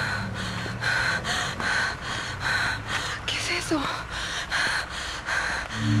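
A person panting in quick, heavy breaths, about two a second, over a steady low hum, with a short gliding electronic tone about three and a half seconds in.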